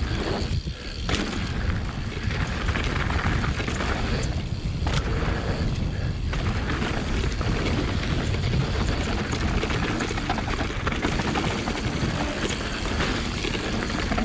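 Mountain bike descending a dry dirt and gravel trail at speed: wind buffeting the on-board camera's microphone over tyre noise on loose dirt, with the bike rattling and knocking over bumps. There is a short lull under a second in, then a sharp knock.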